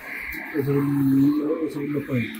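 A man's voice in one long held vocal sound, starting about half a second in, its pitch wavering slightly, as part of a conversation.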